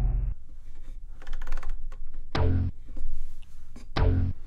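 Short, low sampled bass notes from a Synthstrom Deluge groovebox, a note about every one and a half seconds as the pads are pressed, with faint pad clicks between.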